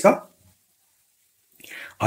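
A man's spoken word ends just after the start, then a gap of dead silence, then a faint breath near the end before he speaks again.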